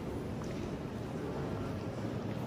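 Steady, reverberant ambience of a large stone basilica interior: an indistinct murmur of many visitors' voices and movement with a few faint clicks, no single voice standing out.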